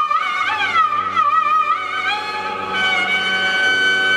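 Carnatic music for a Bharatanatyam dance: a melody instrument plays gliding, ornamented phrases, then holds one long high note from about halfway through, over a steady drone.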